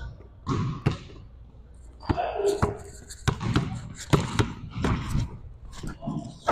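Basketball dribbled on a hardwood gym floor: a run of sharp, irregular bounces during one-on-one play.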